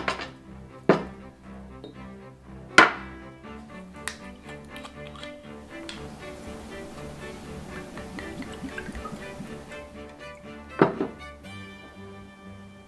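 Background music, with sharp knocks of a glass bowl and a small glass set down on a wooden table, the loudest about three seconds in. From about six to ten seconds in, soju is poured from a bottle into the small glass with a steady hiss, followed by one more knock as something is set down.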